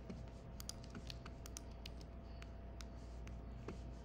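Computer keyboard being typed on: irregular, quick key clicks, over a faint steady low hum.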